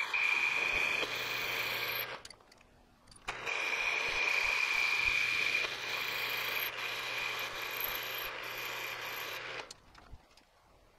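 Milling machine spindle turning a boring head as it cuts a bore in a metal block, a steady whine over the noise of the cut. It runs in two stretches, with a short break about two seconds in, and stops shortly before the end.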